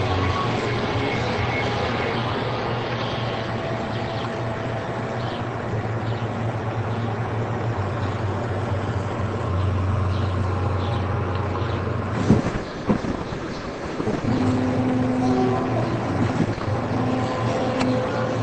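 Window air-conditioner unit running right beside the microphone: a steady mechanical drone with a low hum. A couple of knocks come about twelve seconds in.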